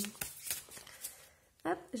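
Soft rustling and light clicks of an oracle card deck being handled, fading out about a second and a half in; a woman then says "hop".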